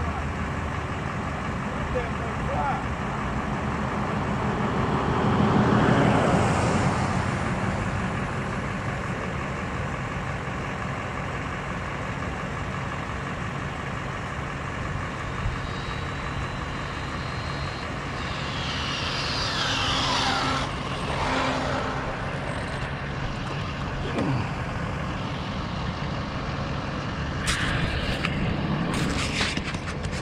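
Steady outdoor rumble with a broad vehicle-like swell about six seconds in. About twenty seconds in comes a high whine that rises faintly as it nears, then drops in pitch as it passes: the Arrma Limitless RC speed car's brushless motor and drivetrain going by at speed on a speed run.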